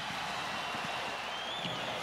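Arena crowd noise: a steady din from the hockey crowd during a fight on the ice.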